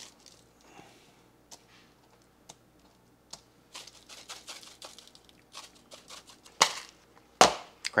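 Faint rustling and light ticking of a seasoning shaker being sprinkled over meat on plastic wrap, with two sharper knocks near the end.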